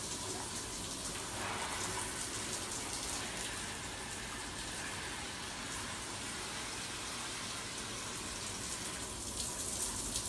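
Shower running steadily, its water filling an instant-noodle bowl held under the spray.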